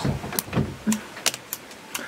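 Handling noise at a studio desk and microphone: a brief low thump near the start, then scattered small clicks and knocks, with a short snatch of voice about a second in.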